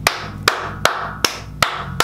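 Hand claps in a steady, evenly spaced beat, about two and a half claps a second.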